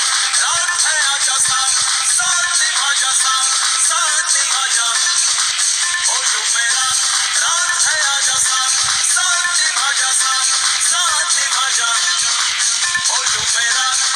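Music: a song with a wavering melody line, thin in the bass.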